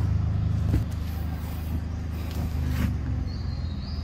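A motor engine running at a steady low hum, easing slightly about a second in, with a faint high chirp near the end.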